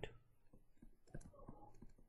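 Faint, irregular clicks and taps of a stylus pen on a tablet screen during handwriting.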